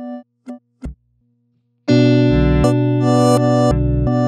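Electric guitar played through the Line 6 Helix's Glitch Delay effect: short chopped fragments of a note cut off with clicks, then about two seconds in a loud sustained layered chord sets in with a pulsing low end.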